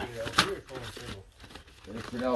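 Cardboard LP record sleeves being flipped through by hand in a box, sliding and rustling against each other, with one sharp slap of a sleeve about half a second in.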